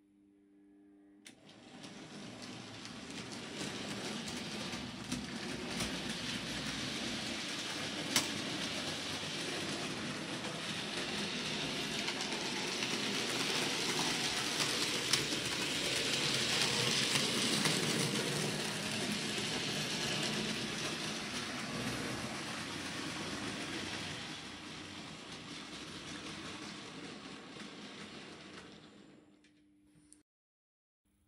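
Electric model train (the Percy tank engine with mail coaches and a brake van) running along the layout's track: a steady whirr of the motor and rolling of wheels on the rails. It starts about a second in, grows louder toward the middle, fades away near the end, and has a couple of short clicks.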